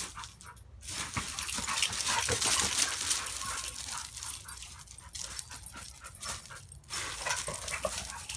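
Two dogs playing tug-of-war with a leash on gravel: a dense run of paws scuffing and crunching the gravel, together with the dogs' play sounds, busiest about two to three seconds in.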